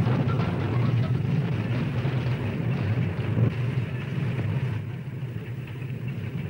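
Steady low rumble with a crackling hiss above it, dipping a little in level about five seconds in.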